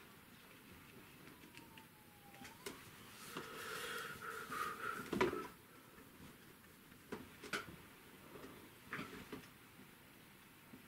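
Quiet sounds of a bristle brush working oil paint on the palette: a squeaky rub for about two seconds that ends in a sharp knock about five seconds in, then a few light taps as the brush goes back to the painting.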